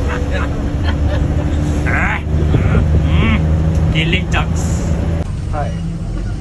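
Steady low rumble of a bus's engine and running gear heard inside the passenger cabin, with voices talking over it.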